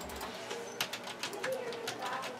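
Computer keyboard keys clicking as someone types, several irregular taps a second.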